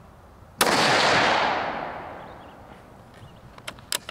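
A single rifle shot from a Tikka UPR in 6.5 Creedmoor about half a second in, its report rolling away over about two seconds. A few sharp clicks follow near the end.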